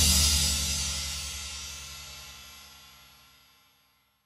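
A rock and roll band's closing hit, a held chord with a cymbal crash, ringing out and fading steadily to silence over about three seconds at the end of a song.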